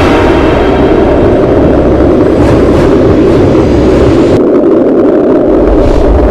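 Loud, steady rumbling roar of a logo-reveal intro sound effect, with a couple of brief whooshes near the middle; its hissy top end drops away about two-thirds of the way through.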